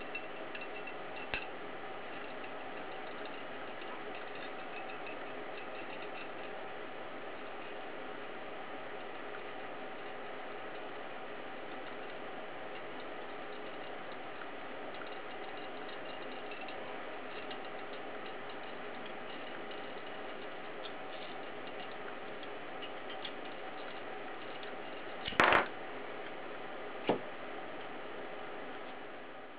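Glass tube held in a heated nichrome-wire cutter: a steady background hiss while the wire heats the moistened score mark, then near the end one sharp crack as the tube snaps cleanly apart at the score, followed by a smaller click.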